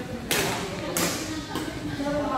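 Badminton racket strings hitting a shuttlecock twice, about two-thirds of a second apart, each sharp hit ringing briefly in a large hall. Voices carry in the background.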